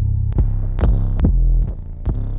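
808 bass samples from a trap drum kit auditioned one after another: deep sustained bass notes, a new one cutting in with a sharp click about four times in quick succession.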